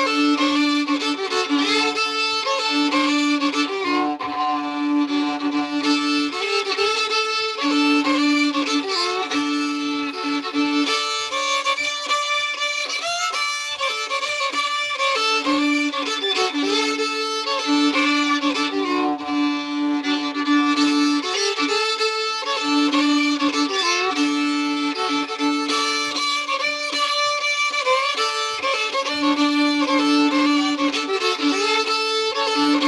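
A solo fiddle plays an old-time Appalachian tune in a D cross tuning (D-A-D-D), bowed in a driving rhythm. A held low D drone keeps sounding under the melody.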